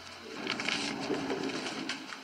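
Restaurant background ambience with a low murmur of voices and faint clatter, heard in a pause in film dialogue.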